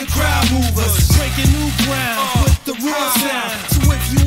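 Hip hop track playing: a beat with a steady bass line under vocal lines, in the break between rapped verses.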